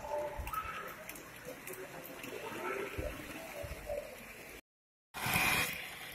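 Indistinct background chatter of people in a hall. About four and a half seconds in it cuts to silence for half a second, then comes back louder.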